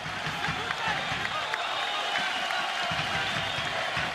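Football stadium crowd noise: many voices shouting at once, with no single voice standing out.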